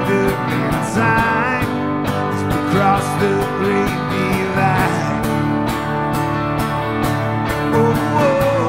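Acoustic guitar strummed in a steady rhythm, with an electric guitar playing lead lines over it, some notes bending in pitch, in an instrumental passage of a live acoustic song.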